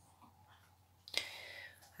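Near silence, then about a second in a short click followed by a breathy hiss lasting about half a second: a person's whispered breath.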